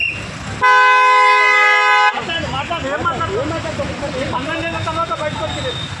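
A vehicle horn sounds once, a loud steady blast held for about a second and a half, starting just under a second in, amid people talking.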